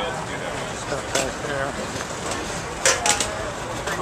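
Background chatter of voices, with a few sharp clatters of aluminium foil pans and steel chafing dishes being handled, the loudest pair about three seconds in.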